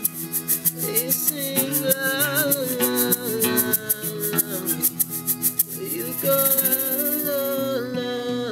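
Live acoustic folk music: strummed acoustic guitars with a hand drum and a rattle keeping a fast, even pulse, over a wordless sung melody. About six seconds in, the rattle's clicks blur into a steady hiss.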